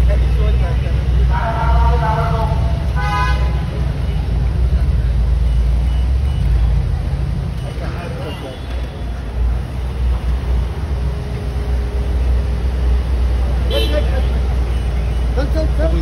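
Low engine rumble of Mercedes G-Class SUVs and other cars running and moving off slowly in a convoy. Short horn toots sound near the start, and voices call out near the end.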